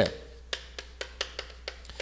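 Chalk tapping and stroking on a chalkboard as lines are drawn: a run of short, sharp clicks, about three or four a second.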